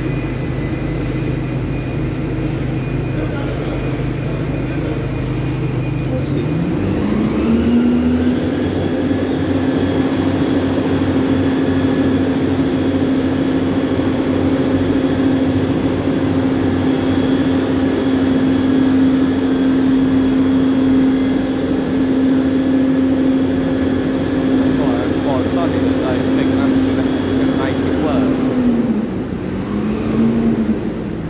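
Dennis Dart single-deck bus's diesel engine idling, then revved up about seven seconds in and held steadily at raised revs for about twenty seconds, before dropping back near the end and briefly picking up again.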